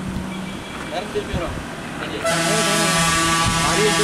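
Heavy vehicle's horn, likely the approaching bus's, sounding one long, steady blast that starts about two seconds in and is the loudest thing here; before it, only wind and traffic noise.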